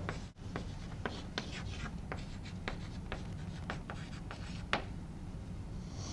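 Chalk writing on a blackboard: a quick, irregular series of short taps and scratches as letters are written, one stroke near the end louder than the rest.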